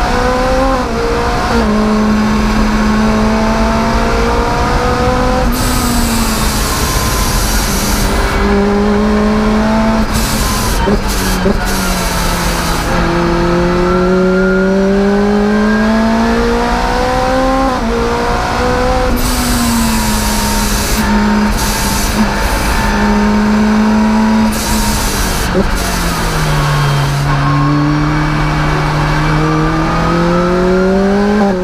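A supercharged Lotus Exige's engine heard from inside the cockpit on track, mostly in second gear. Its pitch climbs and drops again and again as the car accelerates and slows, with a deeper drop near the end before it climbs once more.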